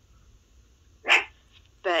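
A single short, loud call about a second in, after near silence; a voice starts speaking near the end.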